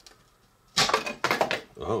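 Baked cookies clattering and scraping against a plate as they are moved onto it, with one cookie skidding across the plate. The sudden burst of sharp knocks starts about three-quarters of a second in and lasts under a second.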